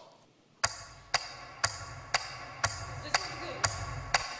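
After a brief hush, a recorded song's intro starts: a sharp percussion hit about twice a second over a steady low bass pulse.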